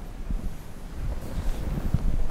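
Low rumbling room and microphone noise with no speech, and a short soft knock just before the end.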